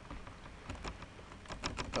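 Computer keyboard being typed on: a few scattered keystrokes, then a quicker run of them near the end.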